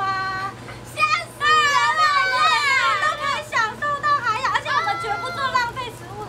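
Several young women talking and exclaiming excitedly in high voices, often over one another, with a steady low hum underneath.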